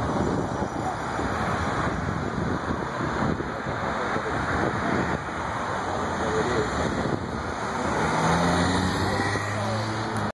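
Road traffic from cars driving along the road below: a steady wash of engine and tyre noise. Near the end a steady engine hum comes in.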